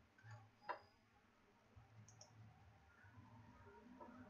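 Near silence with a few faint clicks from a computer keyboard and mouse during code editing, the sharpest about three-quarters of a second in and a quick pair a little past two seconds.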